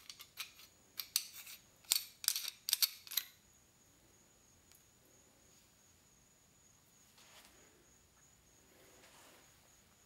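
Sharp metallic clicks and clinks of small metal press parts and tools being handled, about a dozen in the first three seconds, then only faint room hiss with a thin high whine.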